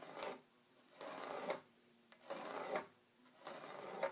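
Pencil scratching along a metal straight edge on rough-sawn lumber as a line is drawn. It comes in four short strokes about a second apart.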